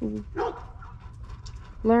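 A dog barking twice in quick succession, short sharp calls, the second rising in pitch.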